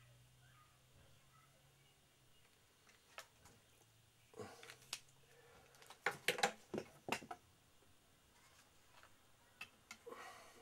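Tools and offcuts being handled on a workbench: a faint steady hum, then a handful of sharp clicks and knocks about four to seven seconds in, with a couple more near the end.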